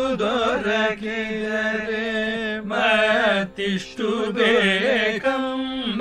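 Carnatic vocal music: a singer performing a devotional song, holding long notes with wavering, ornamented pitch and pausing briefly for breath about halfway through and again near the end.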